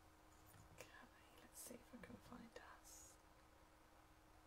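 Faint whispered muttering: a woman speaking very quietly under her breath for a couple of seconds, with soft hissing 's' sounds.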